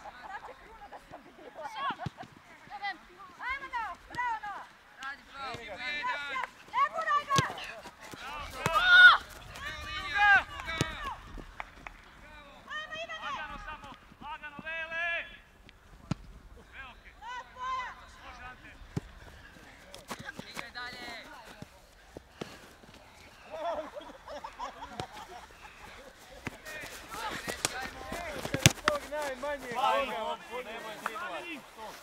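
Players and coaches shouting calls across a football pitch during play, loudest around nine seconds in. A few sharp knocks of the ball being kicked are heard among the shouts.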